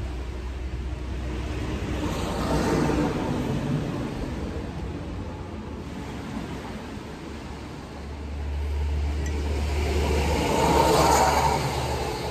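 Road traffic passing: a vehicle goes by about two to three seconds in, and a louder one builds from about eight seconds and peaks near the end, over a steady low engine rumble.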